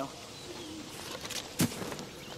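Outdoor ambience with birds calling, including a soft low cooing call. A single sharp knock sounds about a second and a half in.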